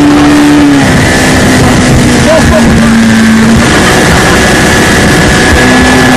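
Towing motorboat's engine running at speed under heavy wind and water noise. Its pitch steps down a little about a second in and again about two seconds in, then rises near the end.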